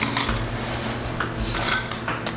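Faint clicks and rubbing from a handheld water bottle as someone drinks from it and lowers it, a few small knocks spread through the two seconds.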